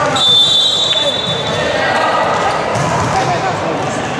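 A volleyball referee's whistle, one steady shrill blast lasting about a second just after the start, over constant players' and spectators' voices echoing in a large gym.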